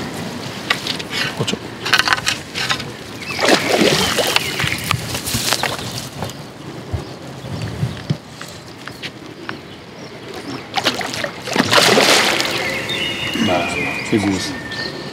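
A hooked carp thrashing and splashing at the surface close to the bank as it fights near the landing net, in irregular bouts, loudest a few seconds in and again near the end.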